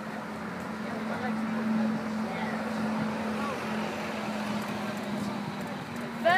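Road traffic on a city street: a steady low engine hum over a wash of road noise, swelling a little about two seconds in, with faint voices in the background.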